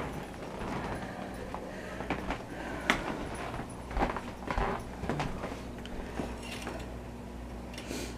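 Footsteps and handling noise with a few light knocks over a low steady hum, as a small metal heat-powered wood stove fan is carried across a room to a barrel stove.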